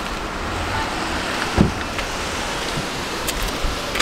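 Steady outdoor noise with wind buffeting the microphone, and one dull thump about a second and a half in.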